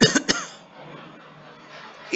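A man's short cough: two or three sharp bursts in quick succession at the very start.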